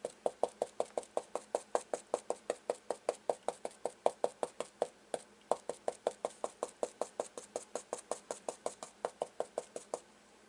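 Stencil brush pounced straight up and down onto a stencil laid over a flour sack towel, a steady run of quick taps about five a second that stops right at the end.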